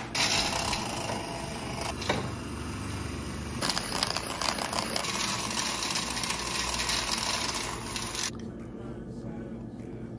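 Milk being frothed for a coffee: a steady whirring hiss that grows brighter and more airy about three and a half seconds in, then stops shortly before the end.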